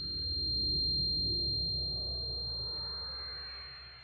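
Film sound design just after an explosion: a steady high-pitched ringing tone, the ear-ringing effect of a blast survivor left stunned, held over a deep rumble that swells and then slowly fades away.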